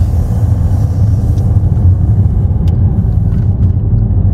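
Car driving over a rough, patched road, heard from inside the cabin: a steady deep rumble of tyres and engine, with a few faint knocks from the bumps.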